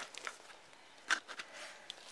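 Nylon tomahawk sheath rustling and scraping as the tomahawk head is pulled through it. There are a few soft handling noises, with the sharpest scrape about a second in.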